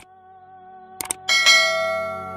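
Subscribe-button sound effects: a click, a quick double click about a second later, then a bell sound effect that rings and slowly fades.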